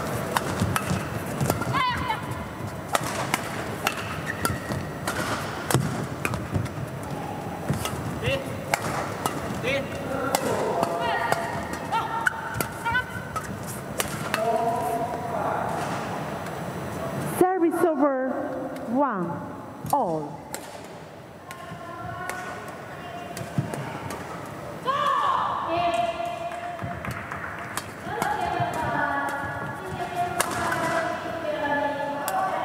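Badminton doubles play on an indoor court: sharp cracks of rackets striking the shuttlecock, and shoes squeaking on the court mat as players lunge. There is a lull partway through, then play picks up again near the end.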